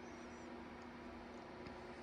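Faint room tone with a steady low hum made of two tones, and a few faint light ticks.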